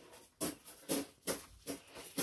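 Tomato plant leaves and stems rustling in about four quick bursts as the plants are shaken by hand to help the flowers self-pollinate.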